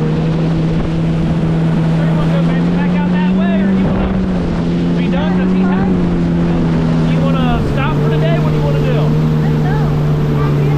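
Yamaha VX Cruiser HO WaveRunner's 1.8-litre four-stroke engine running under way. Its steady note shifts slightly in pitch a few times as the throttle changes, about four seconds in and again before eight seconds.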